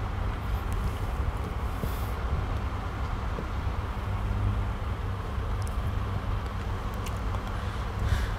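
Steady low background rumble with a light hiss and no speech, with a couple of faint clicks near the end.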